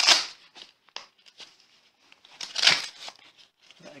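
Velcro strap of a walking boot being ripped apart, two short tearing bursts about two and a half seconds apart, with a few small clicks of the strap and buckle between.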